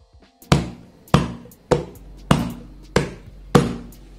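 Hands thumping down on the lid of a plastic food container on a table to seal it: six heavy thumps, evenly spaced about half a second apart, each with a short hollow tail.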